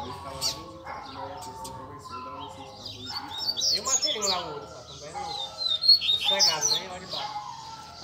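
Several caged double-collared seedeaters (coleiros) singing against one another, their quick, overlapping chirping phrases continuing throughout.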